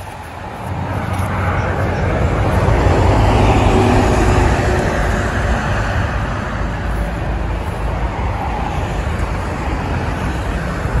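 Road traffic noise: a low rumble that swells over the first three seconds or so, then holds steady.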